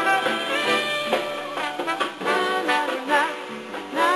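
Live jazz band playing an instrumental break, a saxophone soloing over the band.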